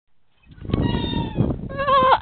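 A person's high-pitched held squeal, then a short wavering cry near the end, over a rushing noise from the camera being swung about.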